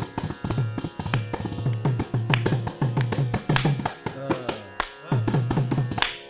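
Carnatic percussion, mridangam and kanjira, playing a fast rhythmic passage without singing, typical of a tani avartanam solo: deep ringing bass strokes about three to four a second under rapid lighter strokes, with a brief pitch-bending stroke and a short drop in the bass about five seconds in.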